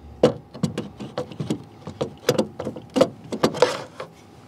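Aluminium mounting plate being handled and fitted onto an aluminium track rail: a run of irregular metal clicks and knocks, with a longer sliding scrape about three and a half seconds in as the plate slides into the rail.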